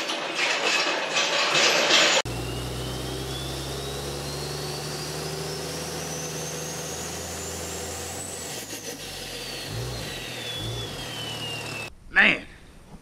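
Channel logo intro sound: a steady low engine-like drone under a single high synthetic tone that rises slowly for about six seconds and then falls away. Before it, for about two seconds, there is garage noise with a few knocks.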